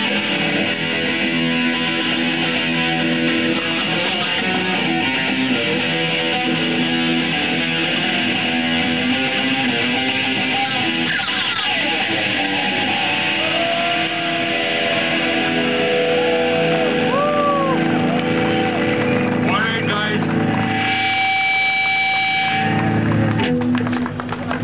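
Live rock band playing loosely with distorted electric guitars, with string bends; near the end a single guitar note is held for about two seconds.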